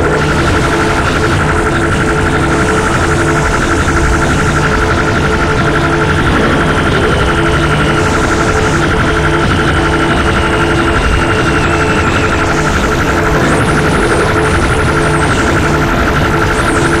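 Harsh electronic noise music: a dense, loud, unbroken wall of noise with droning held tones and a faint pitch slowly sliding downward. Wavering high squeals come in near the end.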